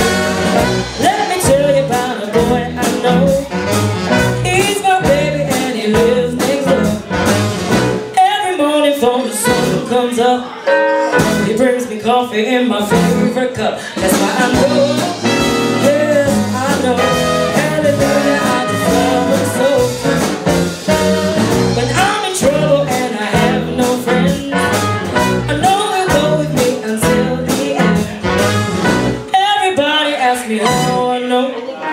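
A live rhythm-and-blues band playing, with a woman singing into a microphone over electric bass and a semi-hollow electric guitar.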